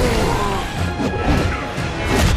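Crashing and smacking impact sound effects from a cartoon superhero fight, over dramatic background music.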